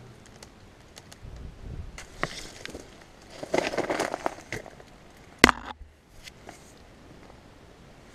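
Rustling and scattered clicks and knocks of someone moving through clutter in the dark, with one sharp knock about five and a half seconds in.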